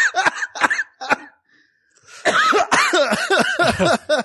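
Men laughing hard in short rapid bursts, breaking off for about a second, then starting up again.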